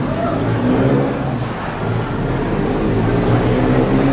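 Steady low rumble of a large, busy public venue, with an indistinct low hum and murmur.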